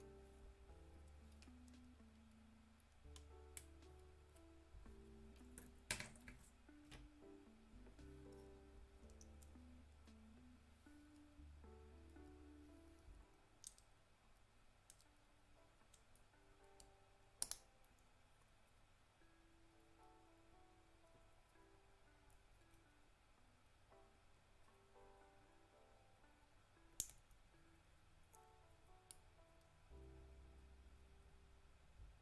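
Faint background music with a melody and, for the first half, a low bass, overlaid by a few sharp, isolated snaps of side cutters nipping plastic model-kit parts off the runner.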